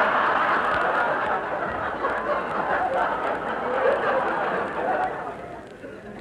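Studio audience laughing at a gag in a 1940s radio comedy broadcast: one long laugh that swells at once and dies away near the end.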